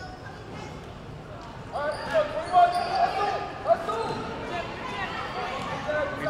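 Basketball game sounds echoing in a gymnasium during a free throw and the play that follows: the ball bouncing on the court and shouting voices. It is quieter for the first two seconds or so, then busier with several sharp loud moments.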